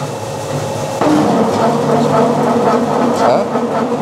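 An animal-feed pellet mill starting up about a second in, then running with a loud, steady machine sound over the lower hum that came before.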